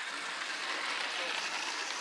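Slot cars' small electric motors running around the track behind the pace car, a steady whir.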